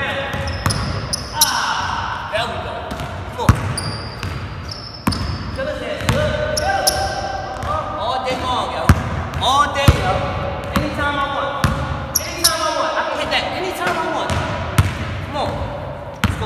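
A basketball bouncing on a hardwood gym floor during dribbling and shooting, a series of sharp thuds at uneven intervals. A person's voice runs through it.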